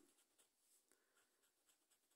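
Very faint scratching of a scraper on a lottery scratch card's coating: a few soft, scattered ticks, near silence.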